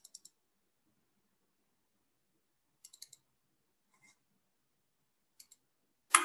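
Near silence broken by faint, sharp clicks in small clusters: about four at the start, four about three seconds in, one a second later, and two near the end.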